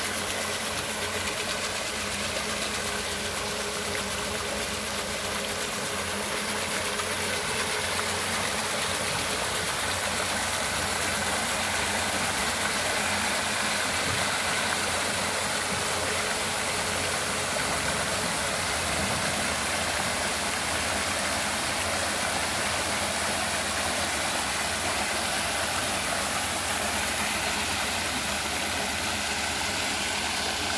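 Solar-powered paddlewheel aerator running steadily: its eight-blade paddlewheels churn and splash the pond water, over a faint steady hum from the brushless DC motor drive.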